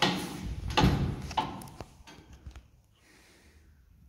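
Manually opened landing door of an old ZREMB Osiedlowy elevator: a sudden clunk as it is pulled, a louder knock about a second in, then a sharp click and a few lighter clicks, dying away after about two and a half seconds.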